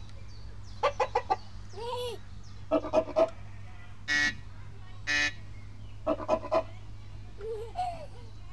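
Hen clucking in short runs of three or four clucks, heard three times, with two short higher calls near the middle, over a low steady hum.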